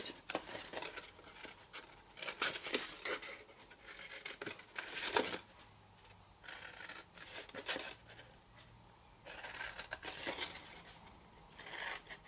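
Scissors snipping through cardstock, a series of short crisp cuts in bursts with brief pauses between, as a box blank is cut up along its score lines.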